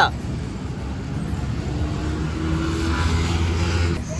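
Motor vehicle running nearby: a steady low engine rumble, with a faint steady engine tone joining about halfway through.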